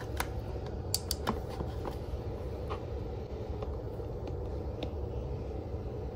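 Steady low room hum with a few faint clicks, a cluster about a second in and a couple more later: an SD card being pushed into a handheld trail-camera card viewer and its buttons being pressed.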